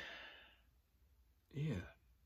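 A man's breathy sigh that fades out over the first half second, then a short voiced sound with a bending pitch about a second and a half in.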